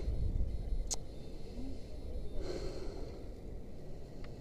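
A man breathing out heavily once, about two and a half seconds in, over a steady low wind rumble on the action camera's microphone. There is a short sharp click about a second in.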